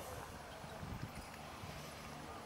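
Faint hoofbeats of a horse trotting on a sand arena surface.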